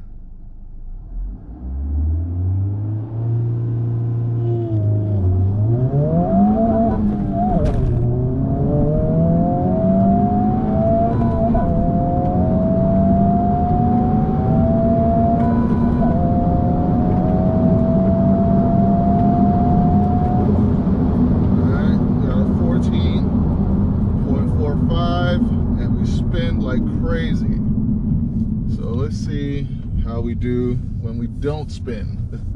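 Honda Civic Type R (FL5) 2.0-litre turbocharged four-cylinder heard from inside the cabin on a quarter-mile launch. The revs are held for a few seconds, then the car pulls hard at full throttle through the gears, the pitch climbing after each of three upshifts. About two-thirds of the way through the driver lifts off, leaving steady road and tyre noise.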